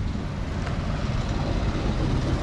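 Steady street traffic noise, a low rumble of vehicles on the road.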